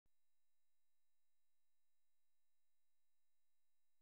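Near silence: a silent intro with no audible sound.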